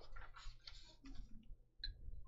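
Faint rustling of a sheet of painting paper being handled and laid down on the desk, followed by a few light taps and clicks as it is pressed flat.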